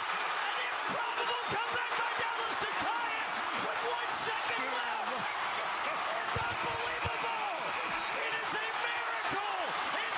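Basketball arena crowd cheering and shouting steadily, with individual yells rising above the din.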